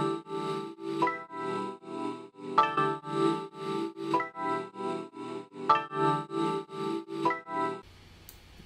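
Sampled piano chord loop played back through an Auto Pan effect at full amount, which chops its volume into even pulses of a few a second. The chords change about every second and a half, and playback stops abruptly near the end.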